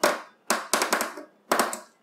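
Hand screwdriver driving a screw into the metal frame of an LED TV panel: three short bursts of clicking and scraping as the screw is turned in strokes.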